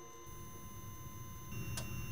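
Quiet electronic sound design: faint steady high tones over a low hum, with a single sharp click near the end.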